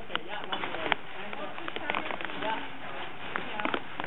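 Indistinct voices of several people talking in the background, with scattered light clicks and knocks.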